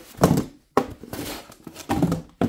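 A stiff cardboard mailer envelope being handled and flipped: a few dull knocks and rustles of cardboard, the loudest about a quarter of a second in, with a brief scraping rustle in the middle.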